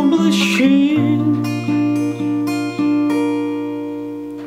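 Acoustic guitar playing a chord: a sung line ends about a second in, then the chord rings on while single strings are picked over it several times, slowly fading.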